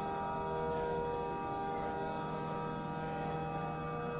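Amplified cello drone: many layered tones held steady without attack or break, forming a slow sustained chord.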